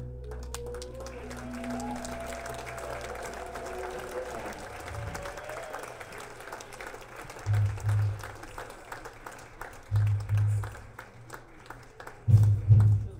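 A live band's last sustained notes die away into audience applause. Later come three pairs of low, heavy drum hits from the drum kit, each pair about two and a half seconds after the last, and these are the loudest sounds.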